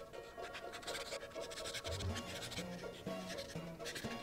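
Paint marker tip scratching on paper in repeated short strokes, over background music whose bass line comes in about two seconds in.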